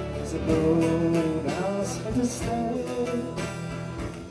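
Live acoustic band playing: two acoustic guitars strumming chords, one of them a twelve-string, in a steady rhythm.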